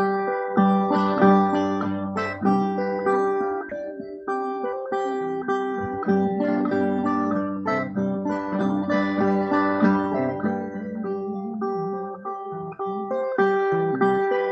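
Two Brazilian folk violas (viola caipira) playing a baião instrumental: a plucked melody over a steady low note.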